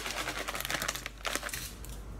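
Plastic bag of soya mince crinkling as it is handled: a dense run of crackles that thins out after about a second and a half.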